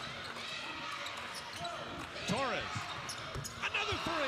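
Live college basketball game sound on a hardwood court: a ball bouncing and sneakers squeaking, with a sharp pair of squeaks about two and a half seconds in, over a steady arena crowd murmur.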